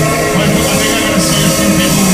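A rock band playing live and loud, with a bass line moving up and down under a dense, steady wall of amplified sound.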